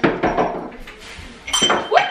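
Bottles and jars clinking and knocking as they are set down on a hard kitchen counter: a sharp knock at the start, then another cluster of clinks with a brief glassy ring about a second and a half in.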